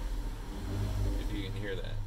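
The 2015 Toyota Sienna's V6 engine idling just after a push-button start, heard inside the cabin as a low, steady hum. A man's voice is heard faintly over it.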